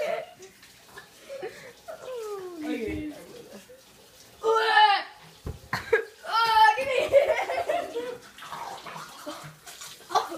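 Kitchen tap running into a sink, with boys' wordless vocal sounds over it: a long falling groan, then louder shouts and laughter.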